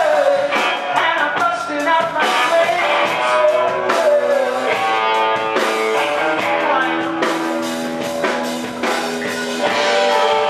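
Live rock band playing: a male lead singer over electric guitar and drums, with regular drum hits throughout.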